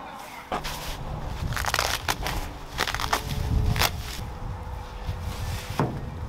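Clear plastic packaging crinkling and crackling irregularly as a large plastic sheet stencil is unwrapped and pulled out.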